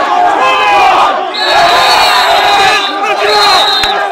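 A group of men shouting and yelling over one another while cheering on a tug-of-war. A high, steady shrill note cuts in about a second and a half in, holds for over a second, and comes back briefly near the end.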